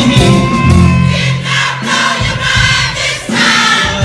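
Live soul band playing while a concert audience sings along, many voices together over sustained low band notes, in a call-and-response sing-along.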